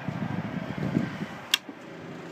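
A low rumbling noise, then a sharp switch click about one and a half seconds in. Right after it the boat's freshwater washdown pump starts with a steady hum, showing the pump works.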